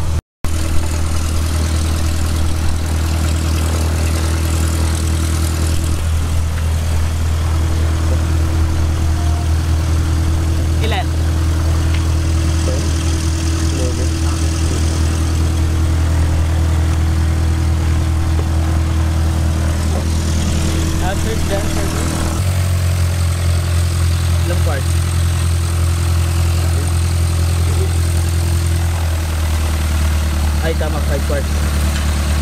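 An engine idling steadily, a deep even hum that shifts slightly in tone about two-thirds of the way through.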